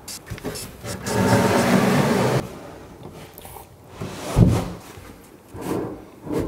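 Cordless drill driving a screw through a plywood cabinet back, a motor whir of about a second and a half starting a second in. A couple of heavy wooden thumps follow, the louder one a little past the middle.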